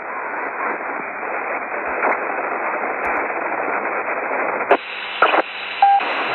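CB radio static on 27.100 MHz, a steady hiss of received noise with no clear voice in it. About three-quarters of the way through, the hiss turns abruptly brighter, with two short crackles and a brief beep near the end.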